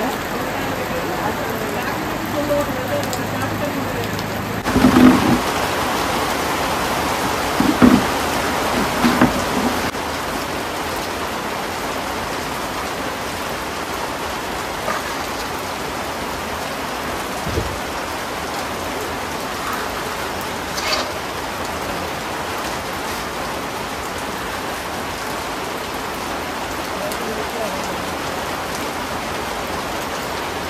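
Heavy rain falling steadily, a constant hiss, with a few brief louder sounds in the first ten seconds.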